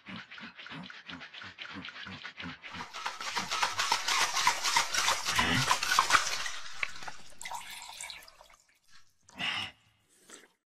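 A metal cocktail shaker shaken in a steady rhythm, about four strokes a second, with a low grunt on each stroke. About three seconds in the shaking turns faster and louder, and it stops shortly before the end.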